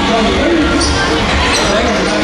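A basketball being dribbled on a hardwood court, with indistinct voices and crowd noise echoing around a large indoor hall.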